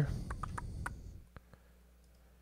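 A few faint clicks of a computer mouse in the first second and a half.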